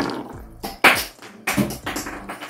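Hard plastic shower parts clacking and knocking together as a PVC pipe, a threaded connector and a shower head are handled and fitted: a few sharp knocks, the loudest about a second in.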